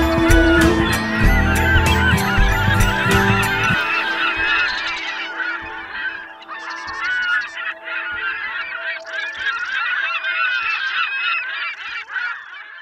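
A large flock of seabirds calling over one another in a dense, continuous chorus of short, wavering cries. A strong low sound lies under the first four seconds and stops about four seconds in.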